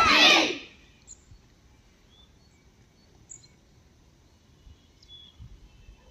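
Several voices shouting loudly together, cut off within the first second. Then a quiet outdoor background with a few short, high bird chirps.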